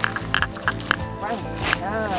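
Background music with steady held notes, over the dry rustle and swish of bundles of freshly cut sedge stalks being shaken out by hand. A brief voice sounds near the end.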